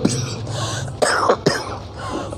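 A man coughing to clear his throat into a microphone: two short coughs about a second in, after a breath.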